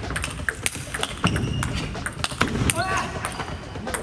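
Table tennis rally: the ball knocks sharply off the rackets and the table at irregular intervals, over the chatter of voices in a large hall. A short rising squeak comes about three seconds in.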